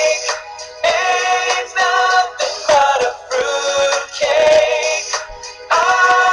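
A song with a sung melody, in phrases of about a second broken by short pauses.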